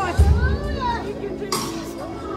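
Live gospel band with electric guitars and drums playing, loud voices wailing and calling out over it with gliding, wordless lines. A heavy low thump comes just after the start and a sharp bright crash near the end.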